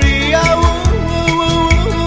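Recorded Brazilian brega song playing, with a steady beat about twice a second and bass under a held melody line.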